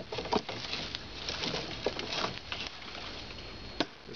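Rustling and crunching of dry leaf litter and brush underfoot as a person pushes through a thicket, with a few sharp cracks of twigs or stems; the sharpest crack comes just before the end.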